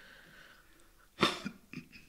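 A person coughs once, sharply, a little over a second in, followed by a couple of fainter short sounds, against quiet room tone.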